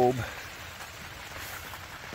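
Steady, even hiss of light rain falling on the greenhouse.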